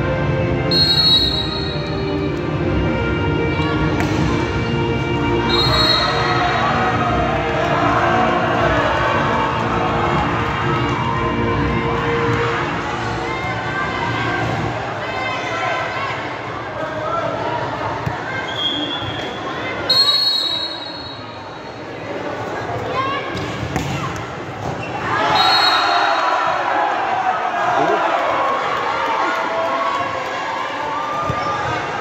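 Sound of a volleyball match in a large indoor hall: players and spectators chattering and shouting, the thud of the ball being hit and bouncing on the court, and a few short high whistles.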